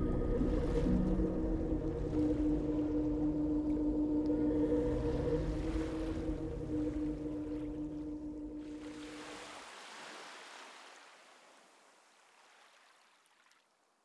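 Sea water washing and rippling, with low held tones from the fading music underneath. The held tones stop about ten seconds in. The water sound then fades away to near silence.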